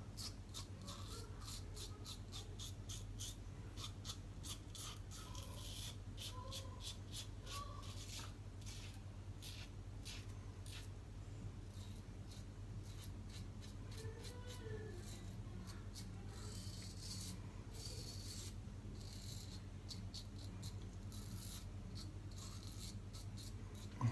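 Gillette double-edge safety razor scraping through a day's stubble under shaving-soap lather, in runs of short, quick strokes with brief pauses between them.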